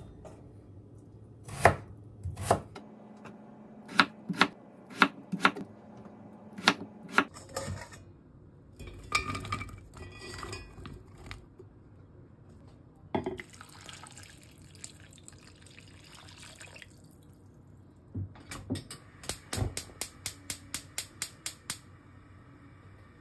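Kitchen knife chopping daikon radish on a wooden cutting board, a series of separate sharp knocks, followed by water being poured into a cast-iron pot of sliced radish. Near the end comes a quick, even run of ticks.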